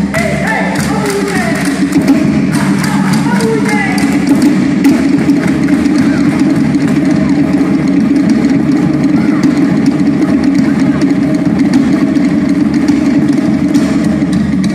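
Live Polynesian drumming, a fast, steady run of drumbeats, with a man's voice over it through a microphone, mostly in the first few seconds.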